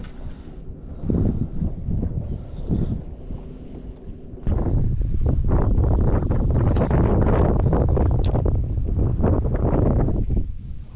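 Wind buffeting the microphone in uneven gusts, then jumping to a heavy, steady rumble about four and a half seconds in. Two brief sharp clicks sound near the middle of that rumble.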